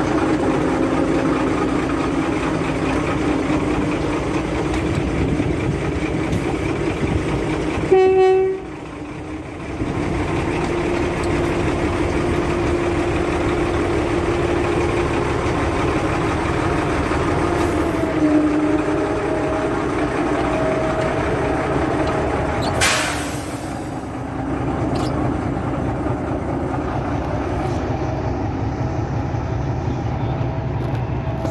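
Narrow-gauge diesel locomotive running steadily close by, with a short horn blast about a quarter of the way in and a brief hiss later on.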